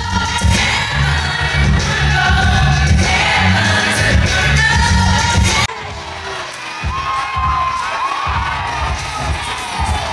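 Live gospel music from the concert hall's sound system, with a heavy pulsing bass and singing, and the crowd cheering and singing along. About halfway through, the sound drops suddenly to a quieter stretch of singing over the band.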